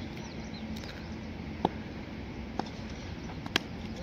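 Open-air background hum with a few short, sharp knocks. The last, near the end, is a wooden cricket bat striking a tennis ball, a shot that goes for four runs.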